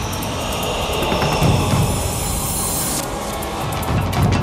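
Sound effects of a TV news opening-title sequence: a steady rushing noise with a low rumble that eases off about three seconds in.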